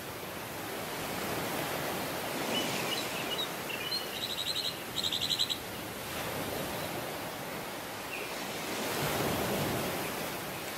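Ocean surf washing up a sandy beach, a steady rush that swells as waves run up the sand, most strongly near the end. About four to five seconds in, a bird gives a few chirps and then a rapid chattering call in two short bursts.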